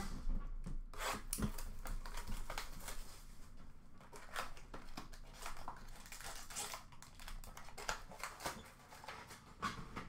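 Plastic wrapping being torn and crinkled off a sealed box of 2023-24 Upper Deck SPx hockey cards as it is opened: a run of irregular crackles and rustles.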